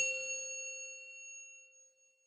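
A single bright metallic chime struck once, ringing and fading away over about two seconds: the sound effect of a channel logo intro.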